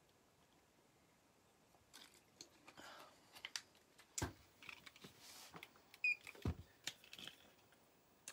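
Handling noise: a scattered series of small clicks and knocks as objects are picked up and set down, starting about two seconds in, with two louder knocks about four and six and a half seconds in.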